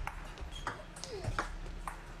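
Table tennis ball being hit back and forth in a rally: several sharp clicks of the ball off the bats and the table. The hits come at a slow pace, a chopping defender returning an attacker's shots from far behind the table.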